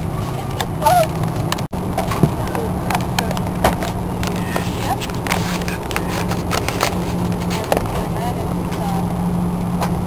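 Cabin noise of an Airbus A340-300 taxiing: a steady low hum from its four engines at taxi power over a rolling rumble, with occasional sharp knocks as the cabin jolts along the taxiway.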